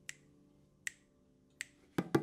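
Three sharp finger snaps, evenly spaced about three-quarters of a second apart, over a faint held drone chord.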